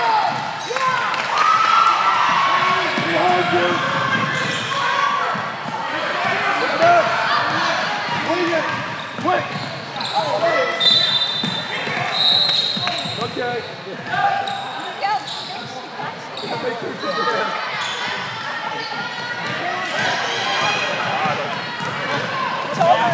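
Live youth basketball game in a gym: many overlapping voices calling out from players and spectators, with the ball bouncing on the hardwood court. There are two brief high squeals about eleven and twelve seconds in.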